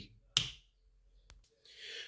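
A single sharp click about a third of a second in, followed by near silence with one much fainter tick a little after one second.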